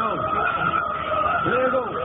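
Car radio playing a hip-hop station break, picked up by a phone's microphone inside the car: a voice with short rising-and-falling siren-like glides over a steady high tone.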